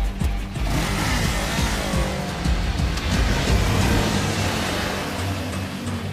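Sport motorcycle engine revving and passing, its pitch falling about two seconds in, laid over background music.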